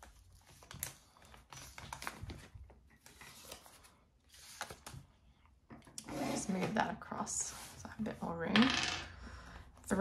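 Clear plastic binder sleeves rustling and crinkling as pages are turned and a banknote is slid into a vinyl envelope, with small clicks and taps, busier in the second half.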